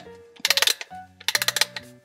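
Clockwork music box being wound by its small winding key: fast ratchet clicking in two short bursts. Background music plays underneath.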